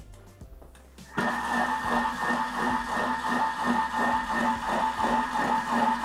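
Bimby (Thermomix) food processor starting about a second in and running steadily at speed 3.5, its butterfly whisk whipping cream in the bowl: a constant motor whine with a quick, even pulsing.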